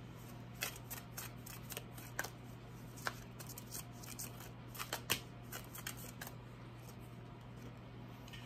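A Universal Celtic Tarot deck being shuffled by hand: irregular soft snaps and slides of the cards, thinning out near the end.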